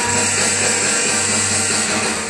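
Live band playing: electric guitars and a drum kit with cymbals, over a low note held steadily.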